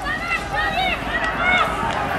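Raised, excited voices calling out in short rising-and-falling shouts over a steady outdoor background noise.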